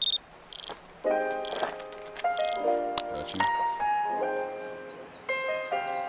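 BCA Tracker2 avalanche transceiver beeping in search mode, a short high beep roughly once a second, as it picks up a companion's transmitting beacon about 2 m away; the beeps stop about halfway through. Soft electronic music with held chords comes in about a second in.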